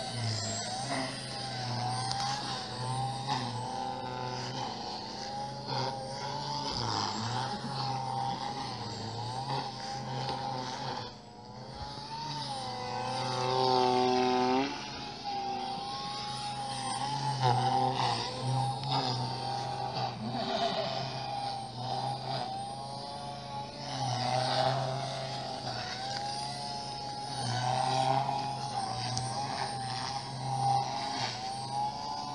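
OXY 3 electric RC helicopter flying aerobatics: a steady rotor drone with a motor whine whose pitch bends up and down as the load changes, growing louder on several passes.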